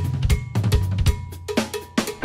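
Drum kit played fast in a funk groove: a dense run of snare and cymbal strokes over a low sustained note.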